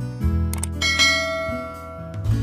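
A click sound effect about half a second in, then a bright bell chime that rings and fades out, over acoustic guitar background music.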